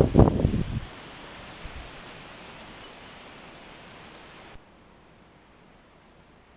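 Steady, even outdoor background hiss of forest ambience. It drops abruptly to a fainter level about four and a half seconds in.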